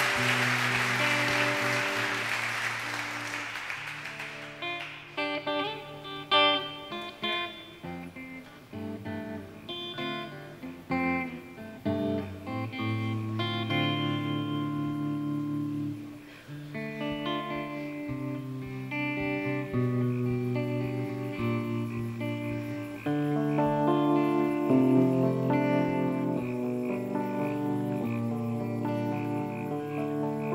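Applause dying away over the first few seconds as a Telecaster-style electric guitar plays the slow introduction of a zamba, with single picked notes and chords ringing over sustained low notes.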